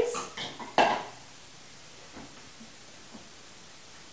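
Strawberries tipped from a glass bowl into a Vitamix 5200 blender container, a short clatter at the start, followed by a single sharp knock of a dish on the counter just under a second in.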